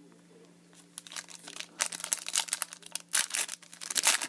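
A foil trading-card pack being crinkled and torn open by hand, a quick run of crackles and rips starting about a second in.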